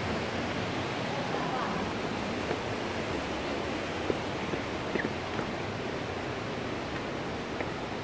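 Steady rushing of falling water from a waterfall, with a few faint taps over it.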